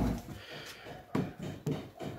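Faint handling noises, a few soft knocks and rustles, as a ribbed plastic suction hose is moved and turned in the hand.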